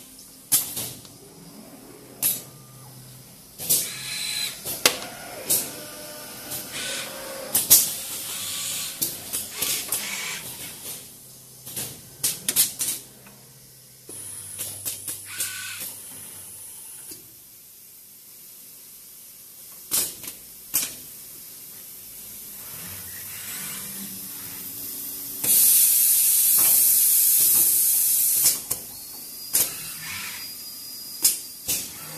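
Automated wiring-harness production machinery at work: repeated sharp clicks and short hisses of pneumatic valves and cylinders, over a faint hum of robot-arm motors. A loud steady blast of compressed air runs for about three seconds near the end.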